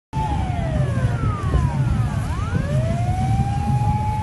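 A motorcade siren wailing: its pitch falls, turns about two and a half seconds in, rises again and then holds a steady high note, over a continuous low rumble.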